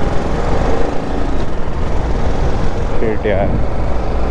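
Riding a motorcycle at speed: steady rush of wind noise on the rider's microphone over a low rumble of engine and road.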